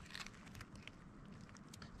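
Near silence with faint, scattered light clicks and rustles: twine being wrapped and tightened around a bundle of dry grape-vine cuttings.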